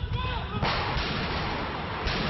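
Gunshots in a street below, picked up from a rooftop by a phone microphone: two sharp cracks, about half a second and a second in, over a steady rush of noise.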